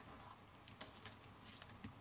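Faint rustling and a few light, crisp ticks of NZ flax (Phormium tenax) strips being handled and woven over-one-under-one by hand.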